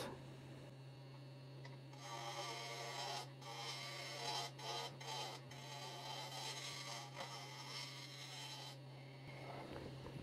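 Carbide turning tool making rounding cuts on a spinning maple blank on a Laguna Revo 15|24 wood lathe: a faint buzzing hiss of cutting from about two seconds in until near the end, broken by a few short pauses, over a steady low hum.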